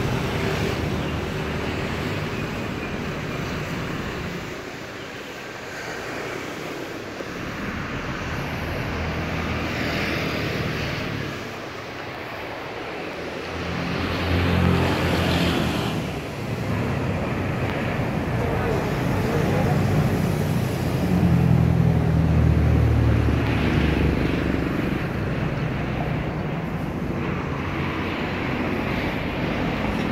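Street traffic: vehicles driving past, with a steady background of engine and tyre noise. The engine rumble swells as vehicles pass, once around the middle and again for several seconds about two-thirds of the way through.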